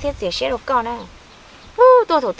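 A woman talking, then a short pause, then a woman's voice starting again loudly near the end.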